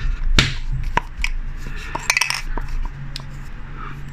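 Handling noises from an aerosol spray-paint can being turned over in the hands among plastic packaging: scattered light taps and clicks, with a short crackly cluster about two seconds in, over a steady low hum.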